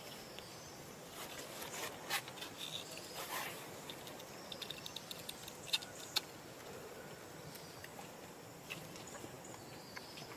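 Quiet outdoor forest ambience with scattered sharp clicks and ticks, a quick run of them about halfway through and two sharper ones just after, over faint high chirps.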